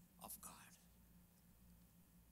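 Near silence with a steady low hum, broken about a quarter second in by a brief, faint murmur of a man's voice.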